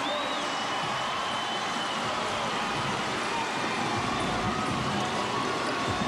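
Basketball arena crowd noise: a steady hubbub from the stands just after a home-team basket, with the sounds of play on the court underneath.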